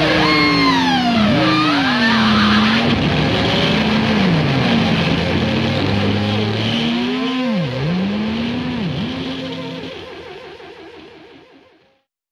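Electric guitar with sustained notes that repeatedly dive steeply in pitch and swoop back up, over a loud rock backing, as a track ends. The sound fades away over the last two seconds to silence.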